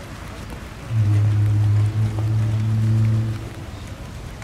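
A loud, steady low hum lasting about two and a half seconds, with a brief break in the middle, over a constant hiss of rain.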